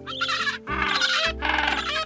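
Penguin calling three times in quick succession, over background music.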